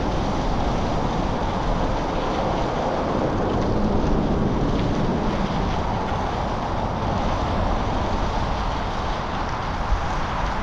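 Steady wind noise rushing over the microphone of a camera on a moving bicycle in gusty wind.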